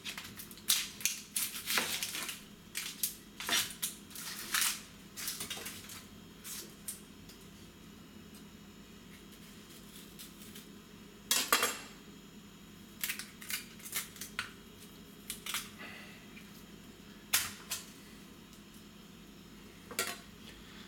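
Irregular clicks, taps and scrapes of a chef's knife and an onion against a plastic cutting board as the onion is peeled with the knife, with a louder knock a little past the middle.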